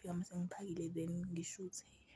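A woman's voice talking, stopping shortly before the end.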